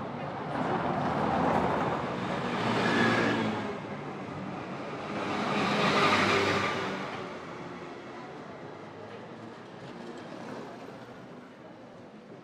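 Motor vehicles passing close by: engine and road noise swells up twice, over the first few seconds and again around the middle, then fades away.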